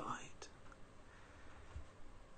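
The tail of a man's spoken word, then a pause of faint room tone with a single small click about half a second in.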